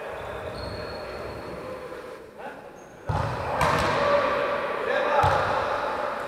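A futsal ball being kicked and bouncing on a wooden sports-hall floor, echoing in the hall, with players shouting; the play gets louder about halfway through, with two sharp ball strikes about a second and a half apart.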